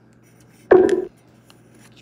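A single short, dull bump, like a hand knocking against the phone or the counter, about two-thirds of a second in, over otherwise quiet room tone.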